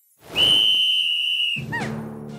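A single long, steady blast on a sports whistle, starting a moment in and lasting just over a second, then short falling cartoon sounds as music with low held notes begins near the end.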